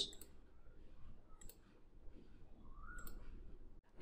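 A few faint computer mouse clicks over low room noise.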